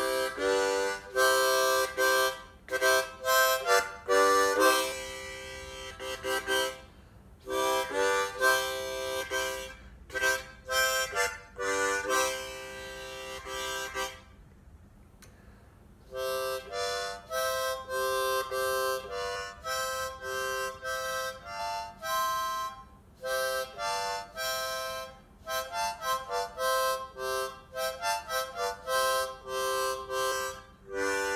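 Hohner ten-hole diatonic harmonica played in phrases of several notes sounding together as chords, with short breaks between phrases. After a pause about halfway, a tune follows whose notes come quicker toward the end.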